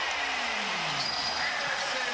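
Basketball arena sound from a game broadcast: a steady crowd hum with a few faint high squeaks from the court.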